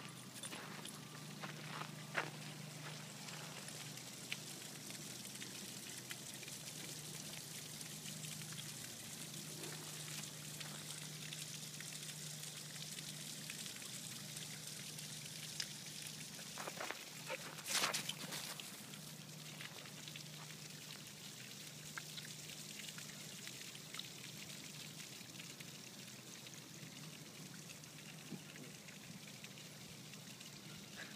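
Faint outdoor ambience: a steady hiss with scattered light ticks and a brief louder scuffling noise a little past halfway.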